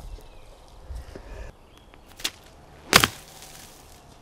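A golf iron swung from rough grass: a short swish ending in a sharp strike of the clubface on the ball about three seconds in. A fainter tick comes just before it.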